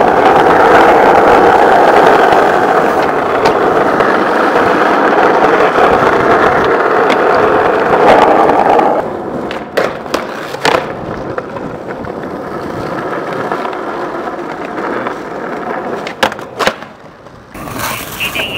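Skateboard wheels rolling on rough asphalt, loud and steady for about the first nine seconds. After that the rolling is quieter, broken by a few sharp clacks of the board striking and sliding along concrete ledges.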